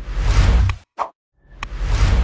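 Sound effects of an animated like-and-subscribe end card: a whoosh with a deep low rumble, a short click about a second in, then a second whoosh starting near the end.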